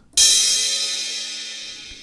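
A sampled cymbal played from a drum-machine pad, struck once just after the start and left to ring out with a long, slowly fading decay.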